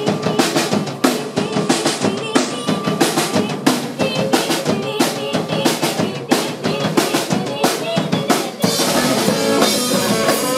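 Live garage punk rock band playing: a drum kit beating out a fast rhythm on bass drum and snare under electric guitars and bass. About eight and a half seconds in the band gets denser and louder, with a steady high wash over the drums.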